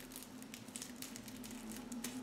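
Faint crinkling and light clicks of a plastic-sealed sticker package being handled, over a steady low hum.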